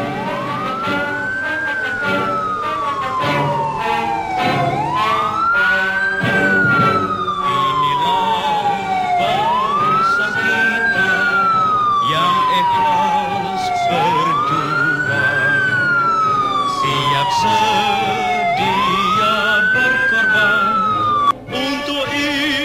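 Police escort siren on a slow wail. Each cycle rises quickly and then falls slowly, repeating about every four and a half seconds, five times in all, until it cuts off near the end.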